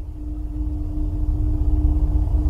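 A deep rumbling drone growing steadily louder, with a steady hum tone held above it: a swelling intro sound effect.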